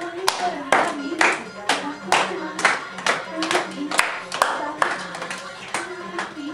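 A group of girls clapping hands in unison, a steady beat of about two claps a second, keeping time for giddha dancing.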